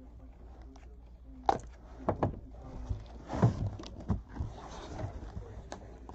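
Cardboard box being cut open and unpacked: a blade slitting packing tape, then the box flaps scraping and knocking, with several sharp clicks.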